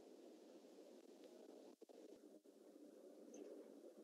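Near silence: only a faint steady hiss of background noise.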